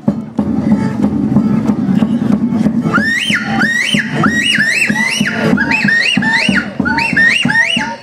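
Live Andean folk band music with a steady beat. From about three seconds in, a high lead instrument plays a run of short, repeated phrases that rise and fall.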